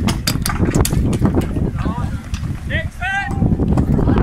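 Sharp knocks of weapons striking wooden round shields in a staged melee, coming thick in the first half, with a shout about three seconds in. Wind rumbles on the microphone.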